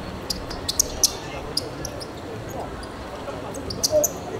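Players' shoes squeaking and tapping and the ball being struck on a hard court surface during a small-sided football game. The sharp sounds are scattered, with the loudest about a second in and just before the end, over a background of voices.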